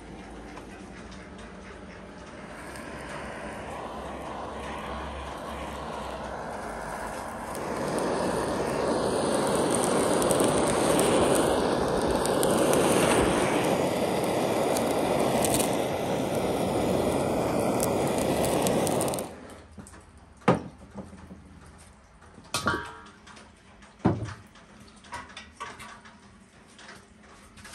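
Handheld gas blowtorch on a canister hissing steadily as it singes the skin of a plucked goose, growing louder about a third of the way in and then shut off abruptly. A few knocks and clatters follow.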